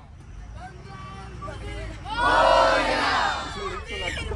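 A busload of schoolchildren shouting together in one loud group shout about two seconds in, after a moment of scattered chatter. A low steady rumble from the bus runs underneath.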